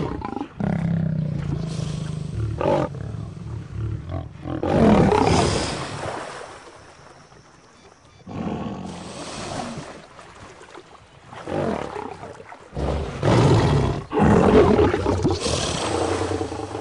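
Lion growling and roaring in several loud bursts, a low rumble first and the longest, loudest roars near the end, in a threat display at a crocodile.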